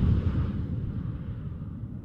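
The low rumbling tail of a boom sound effect, fading away steadily.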